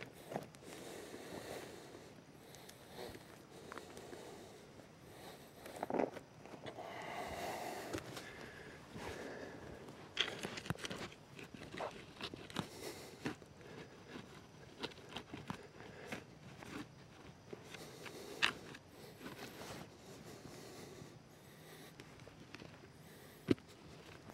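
Hands and a wooden digging stick scraping and scooping loose soil and debris out of a small vent hole dug in the forest floor: faint, irregular scrapes, crunches and clicks.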